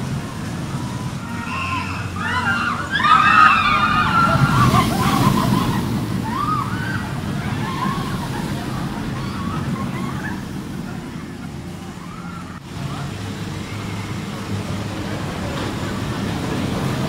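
Mack launched roller coaster trains running along the steel track overhead, a steady low rumble, with riders screaming and shouting, loudest about three to four seconds in and dying down after about nine seconds.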